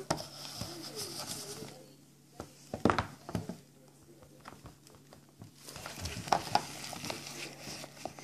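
Faint handling noise of plastic toy dolls being moved about and set down on a wooden table: scattered light clicks and knocks, in two clusters about a third of the way in and again near the end.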